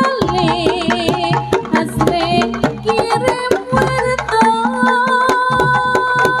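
Javanese jaranan (kuda lumping) gamelan music played without a break: hand-drum (kendang) strokes over pitched metal percussion, with a wavering melody line that is strongest near the start.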